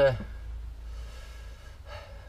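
A man's voice trailing off on a last word, then a pause with a low steady rumble and a breath drawn in just before the end.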